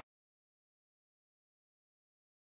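Silence: the soundtrack cuts out at the start, leaving no audible sound.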